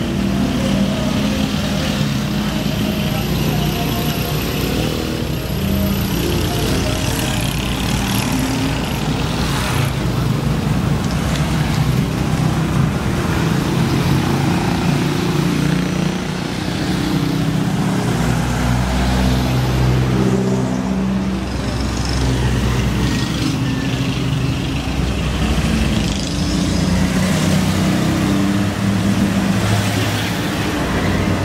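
Engines of slow-moving vehicles, including an ambulance van crawling alongside walkers, running steadily over passing road traffic, with people's voices underneath.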